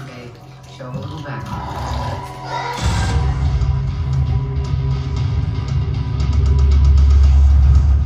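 A television playing a show trailer's soundtrack: dialogue over music at first. About three seconds in, the music swells into a loud score with a heavy bass that builds to its loudest near the end.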